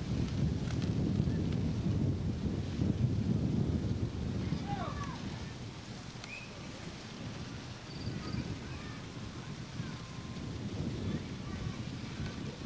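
Wind buffeting the camcorder microphone, a low rumble that is strongest in the first four seconds and then eases. A few faint short chirps come about five seconds in.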